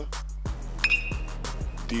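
Background music with a steady beat. About a second in, a metal baseball bat hits the pitched ball with a single sharp, ringing ping.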